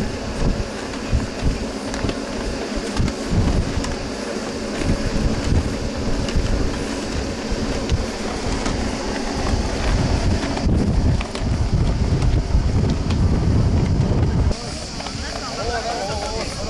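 Wind buffeting the camera microphone in irregular low gusts, over indistinct voices in the background.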